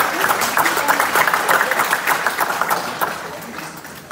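Audience applauding, a dense patter of many hands clapping that thins out and fades over the last second.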